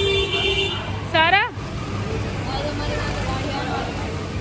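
A child's short, high-pitched squeal about a second in, over a steady low hum of traffic. A brief steady high tone sounds at the very start.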